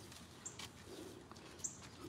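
Two brief, faint, high chirps about a second apart, typical of a small bird, over quiet outdoor background noise.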